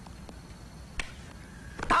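A single sharp click or knock about a second in, over a quiet room, with a man beginning to shout just before the end.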